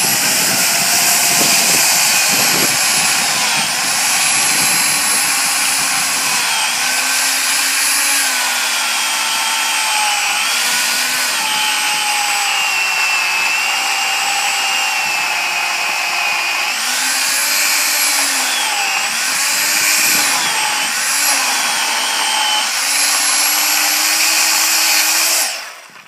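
Makita UC4051A 16-inch corded electric chainsaw with a 14.5-amp motor, cutting under load through a pine log about 14 to 15 inches thick. Its motor pitch wavers and sags as the chain bites, then the saw stops abruptly near the end.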